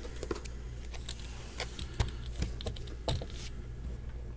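Irregular light clicks and taps from a shrink-wrapped 2018 Topps Museum Collection card box being handled and set down on a table, with one sharper knock about two seconds in.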